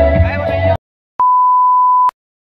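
Wedding background music cuts off abruptly under a second in; after a brief silence a single steady test-tone beep sounds through the rest, the television colour-bar tone used as an editing transition.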